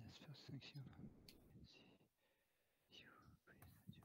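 Very faint, low speech from a video-call line, barely above near silence, with one or two light clicks.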